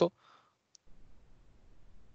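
The tail of a spoken word, then a single short, faint click about three quarters of a second in, followed by low background hiss.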